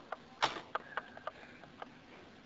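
A quick run of sharp clicks and light knocks, about half a dozen, the loudest about half a second in, from the tape recorder being handled as the recording is changed over to side two of the tape.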